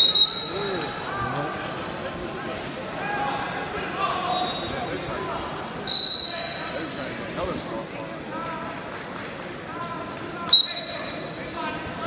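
Referee's whistle blown in several short, flat, high blasts, one at the start, a louder one about six seconds in and another near the end, stopping and restarting the wrestling. Under it is a hubbub of spectators' voices in a large hall.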